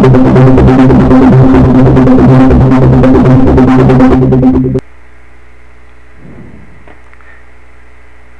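PoiZone V2 software synthesizer playing a buzzy, sustained arpeggiated patch with a fast rhythmic pulse over strong low notes, cut off suddenly about five seconds in when playback stops. A low steady hum remains after.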